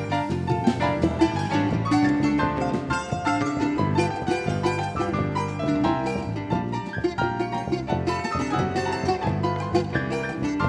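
Live instrumental choro played by a small band: plucked acoustic guitar, finger-plucked electric bass, keyboard, and a drum kit with ride cymbal.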